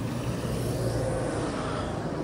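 Street traffic: a steady low hum of vehicle engines and tyres on a town road.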